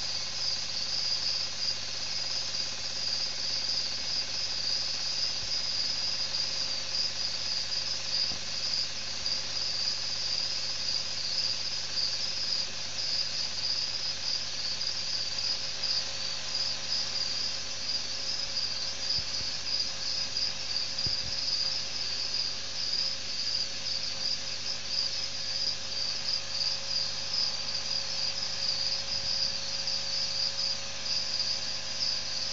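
Crickets chirping steadily, a continuous high-pitched trill that does not let up.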